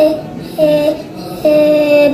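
A young boy's voice repeating and drawing out an 'eh' vowel on a steady pitch: a short one at the start, another about half a second in, and a longer held one near the end. The vowel prolongations and repetitions are typical of stuttering.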